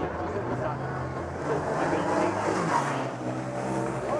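An engine hum, steady in pitch, over spectators chattering along the roadside.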